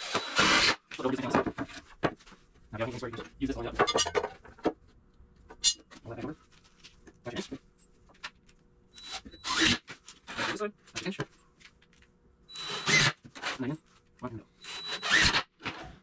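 Cordless screw gun driving screws into 2x4 lumber, in a series of short bursts with pauses between them.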